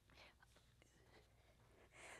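Near silence: a few faint rustles and soft ticks as a person lowers herself onto a carpeted floor.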